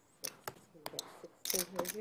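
A few short, soft clicks of poker chips being handled on the table, then faint murmuring voices near the end.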